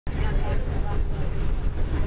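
Steady low rumble of engine and road noise, heard from inside a vehicle driving along a highway.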